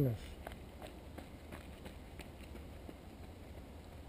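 Running footfalls on a dirt path, a series of faint irregular thuds that grow fainter as the runner moves away, over a steady low rumble.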